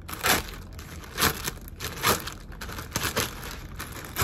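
Clear plastic garment bag crinkling as it is handled and pulled open, in about four sharp rustles.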